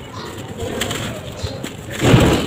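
Dry sand-and-cement clumps crushed and crumbled between bare hands: a gritty crackle with scattered sharper snaps as lumps break and grains fall away. A dove coos faintly in the background.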